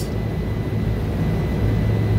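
A steady low machinery hum with a faint hiss over it, unchanging throughout.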